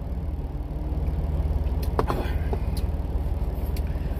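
Semi truck's diesel engine idling, a steady low rumble heard from inside the parked cab, with one light click about halfway through.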